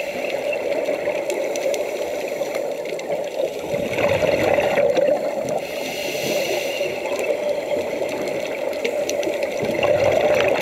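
Muffled underwater sound heard through a camera housing: a steady rushing hum with bursts of scuba regulator exhaust bubbles, about four seconds in and again around six seconds, and scattered small clicks.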